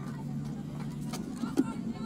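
Pitch-side sound of a football match: a steady low hum, a couple of short knocks, and a sharp thud about one and a half seconds in, the loudest moment, with players calling out faintly.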